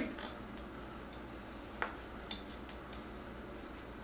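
A metal fork scraping strands from a cooked spaghetti squash half, a quiet scratching with two light metal clicks about two seconds in.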